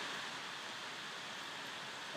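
Faint steady hiss of room tone and recording noise, with no distinct events.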